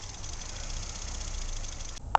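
Car engine and road noise, a steady low rumble heard from inside the cabin of the moving car.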